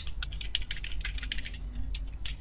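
Fast typing on a computer keyboard: a quick, irregular run of key clicks, with a low steady hum underneath.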